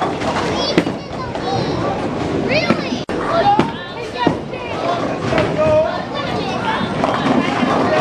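Busy bowling-alley hubbub: overlapping chatter of adults and children's high voices in a large echoing hall.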